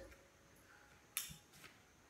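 Near silence: quiet room tone with a single short, sharp click about a second in.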